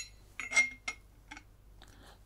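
A few light metallic clinks as a brass bearing cage is set over a steel bearing inner ring. The loudest comes about half a second in with a short ring, followed by fainter ticks.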